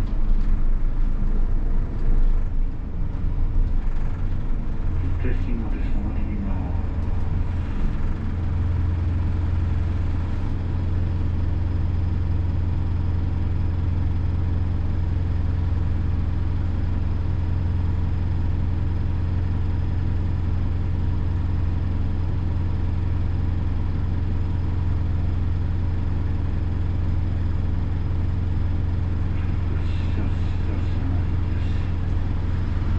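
Hino Poncho small bus's four-cylinder diesel engine heard from inside the cabin. It runs unevenly as the bus slows, then from about eight seconds in settles into a steady low idle while the bus waits stopped.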